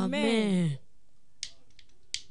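A woman's voice drawing out a last "Amen" into a microphone, falling in pitch and ending under a second in. Then a pause with a few faint, short clicks.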